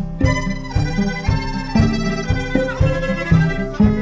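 Instrumental opening of a live chamber-folk song: bowed violin lines held over a steady plucked pulse of about two notes a second.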